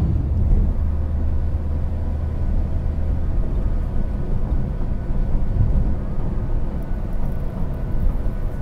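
Steady low rumble of a moving car's engine and tyres on the road, heard from inside the cabin.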